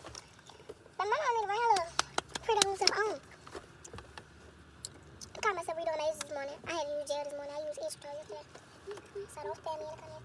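A girl's voice singing or humming a tune without clear words, in short phrases with long held notes in the middle, over scattered small clicks.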